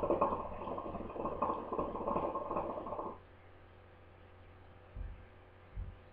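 Water in a hookah's base bubbling steadily as smoke is drawn through the hose, for about three seconds, then stopping abruptly.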